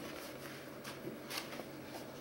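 Faint rustle of a paper page being turned in a thin children's activity book, with a couple of soft paper crinkles about a second in.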